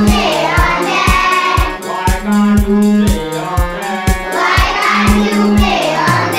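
A group of schoolchildren singing a rhyme together, with instrumental accompaniment that holds long low notes under a steady beat.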